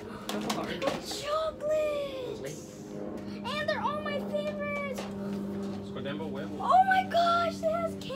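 High-pitched children's voices calling out in short rising-and-falling exclamations, over a steady low hum.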